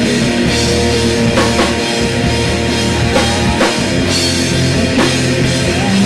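Small rock band playing live in a small room: electric guitars and a drum kit with cymbal hits, loud and steady.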